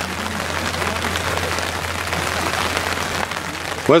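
Steady outdoor background noise: an even hiss on the camera microphone with a low hum under it and faint distant voices, no distinct events.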